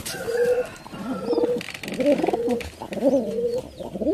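Domestic pigeons cooing, a run of low coos, some held on one note and others rising and falling.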